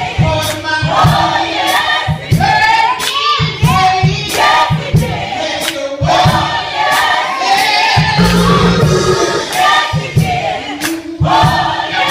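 Church choir of women singing a gospel song, with instrumental accompaniment: deep bass notes under the voices and a steady beat.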